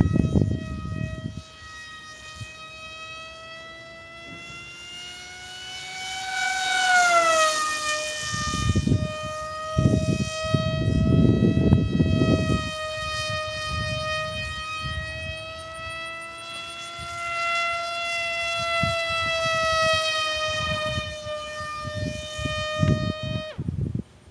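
Brushless electric motor and propeller of a WildHawk foam RC airplane whining at a high, steady pitch in flight. The pitch drifts slowly up and down and drops sharply about seven seconds in. Bursts of low rumble come and go near the start, around the middle and near the end.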